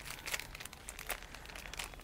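Clear plastic garment polybag crinkling faintly in small irregular crackles as it is handled and opened.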